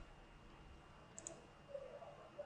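Near silence with two quick computer mouse clicks in a row a little after a second in.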